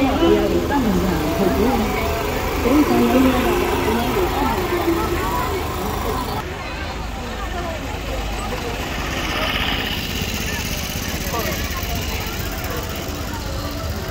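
Several people talking at once over the steady low running of a vehicle engine.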